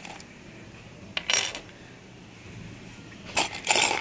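Small gold-plated impon metal jewellery, a chain and pendants, jingling and clinking as it is handled and set down, in a short burst about a second in and again near the end.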